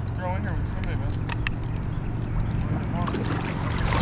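River water sloshing around a wading angler's legs, under a steady wind rumble on the microphone, with brief voices and a few small clicks; a louder rush of water at the very end.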